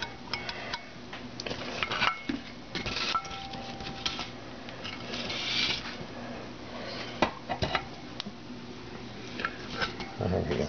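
Loose metal engine parts and bolts from a disassembled Honda CT70 engine clinking and scraping as they are handled on a metal pan: scattered light knocks and clinks with rustling between.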